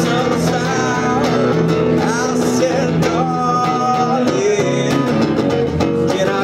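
Electric guitar playing a live country-rock song, an instrumental stretch with no lyrics sung.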